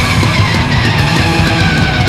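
Hardcore punk recording played loud, with dense distorted electric guitars and drums; a high held tone slides slowly downward through the passage.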